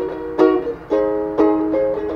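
Ukulele strumming chords in a down-down-up, up-down-up-down, down-up pattern, with a strum about every half second and the chord changing partway through.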